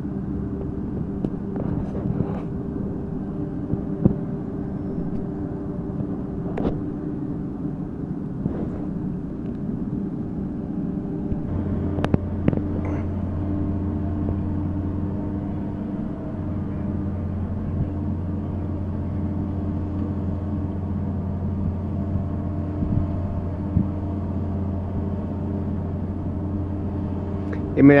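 Marine travel lift running steadily as it slowly hoists a cabin cruiser out of the water in slings. A deeper hum joins about twelve seconds in, with a few light clicks along the way.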